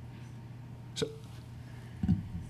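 Quiet room tone with a steady low hum, broken about a second in by one short, clipped vocal sound: a man starting to say "so" before answering.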